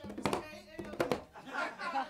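A quiet lull in a small room, with a few faint scattered clicks and knocks and a little low murmur.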